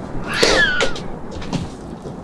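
A cat yowling once: a short, falling cry about half a second in, followed by a couple of dull thumps.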